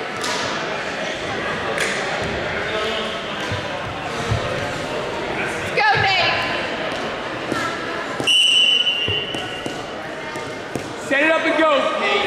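Gym crowd chatter with overlapping voices; about eight seconds in, a referee's whistle blows one steady high note for just under a second, the signal that starts the wrestling bout.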